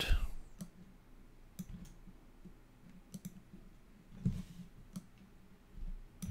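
Faint, sparse single clicks from a computer mouse and keyboard, about seven of them at irregular spacing.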